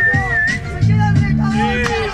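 A person whistling one long, slightly wavering note that stops about half a second in. Under it a hip-hop beat plays, its deep bass note coming in about a second in, with crowd voices.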